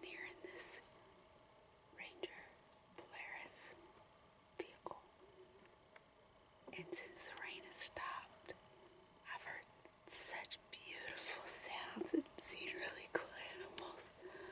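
A woman whispering close to the microphone, in short phrases with pauses between them.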